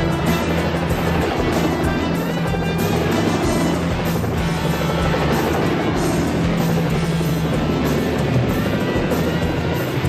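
Bell UH-1 Huey helicopters flying, their rotor and engine sound mixed under a loud rock music score.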